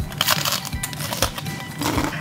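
Biting into and chewing a Liege waffle: a scatter of short crunches and crackles, over background music.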